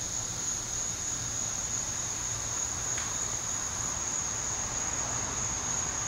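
Insects singing in a steady, unbroken high-pitched drone, one continuous tone that never pauses, over a faint low rumble.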